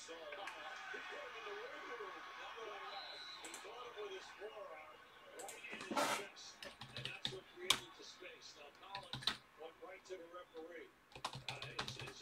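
Computer keyboard typing: scattered, irregular keystroke clicks starting about halfway through, over faint background speech in the first few seconds.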